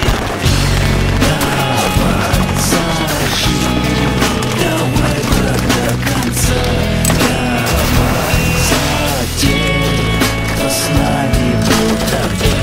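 Instrumental passage of a Russian rock song between sung verses: a band playing bass and drums with guitar, no singing.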